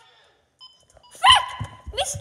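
A dog giving one short, high bark about a second in, after a near-silent start, followed by a few low knocks.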